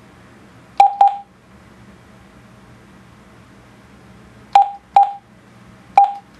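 Juentai JT-6188 mobile radio giving short single-pitch key beeps as a frequency is keyed in: a click-and-beep pair about a second in, then another pair near the end, with a fifth starting right at the close.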